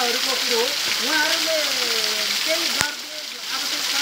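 Waterfall pouring down onto rocks close by: a steady, loud hiss of falling water, with a man's voice rising and falling over it. Near the three-quarter mark there is one sharp click, and the water noise briefly drops.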